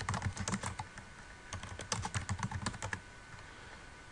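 Computer keyboard typing: a quick run of keystrokes, a short pause, then a second run from about a second and a half in that thins out near the end.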